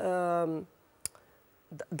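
A woman's voice holding one drawn-out syllable for about half a second, then a pause broken by a single sharp click about a second in, before she speaks again near the end.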